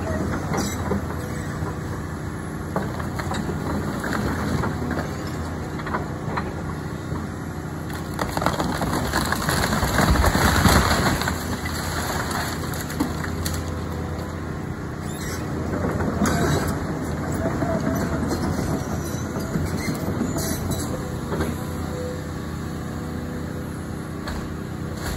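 Caterpillar excavator's diesel engine running steadily under load while its bucket tears into a wooden house, with wood and debris cracking and crashing, loudest about ten seconds in and again around sixteen seconds.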